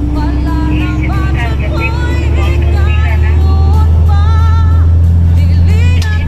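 A song with a singing voice plays over the steady low drone of a heavy vehicle's engine and road noise inside the cab. A faint engine tone slowly rises in pitch over the first few seconds, and the drone grows louder in the second half.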